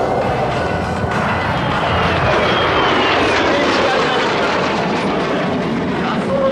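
Kawasaki T-4 jet trainers flying past with a continuous jet noise that grows louder about two seconds in. A whine falls in pitch as they go by.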